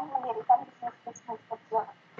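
A bird calling in a run of short, pitched notes, several a second, spaced more widely toward the end.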